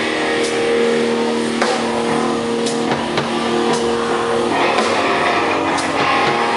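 A live band playing: an electric guitar sustaining long notes, with a few scattered drum and cymbal hits.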